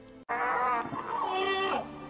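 Loud screeching cry of the hippogriff Buckbeak from the film soundtrack. It cuts in suddenly after a brief dropout, wavers in pitch for about a second and a half, then falls away.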